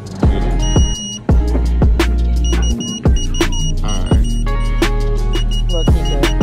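Hip hop music with a heavy bass beat, over which a handheld diamond tester beeps: one short held high tone about half a second in, then rapid repeated beeps from the middle on, the tester's signal that the stones read as diamond.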